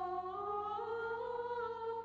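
Three women singing a hymn a cappella, holding slow, sustained notes as the melody steps upward.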